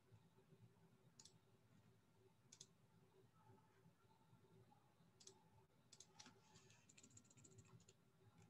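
Near silence with faint computer keyboard and mouse clicks. There are a few single clicks, then a quick run of keystrokes near the end.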